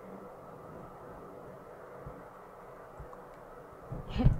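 Faint room tone: a low, steady hum with two soft low thumps, about two and three seconds in.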